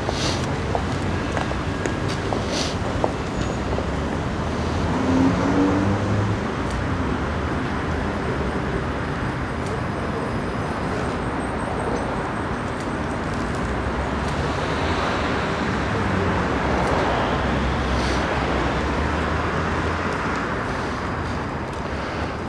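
Steady outdoor background noise of road traffic, with faint murmuring voices.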